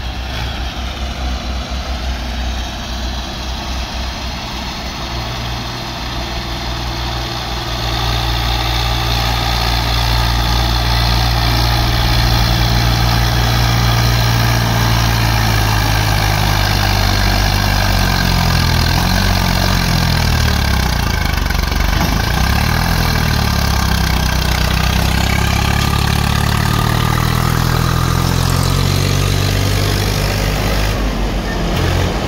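Diesel engines of a farm tractor and a backhoe loader running close by. The sound grows louder about eight seconds in as the tractor comes near. In the second half the engine speed rises and falls as the machines manoeuvre.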